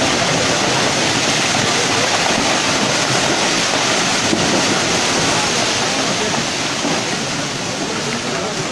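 Landslide debris flow of mud and water pouring down a forested hillside: a steady, loud rushing roar that eases slightly near the end.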